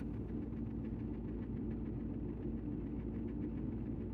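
Ford F-150 engine idling steadily, a low even hum heard from inside the cab.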